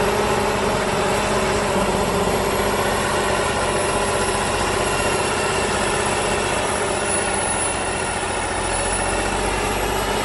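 Diesel engine of a heavy wheeled tractor with a front dozer blade, running steadily under load as the machine pushes through deep snow.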